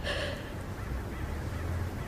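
A woman's short, shaky crying breath, over a low steady hum.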